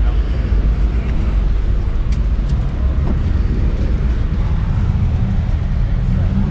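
A steady, loud, deep mechanical rumble and hum.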